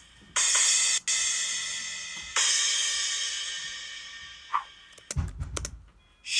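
Three loud cymbal crashes, each left to ring and fade slowly, played back through laptop speakers. Near the end come a few sharp clicks and a low thump.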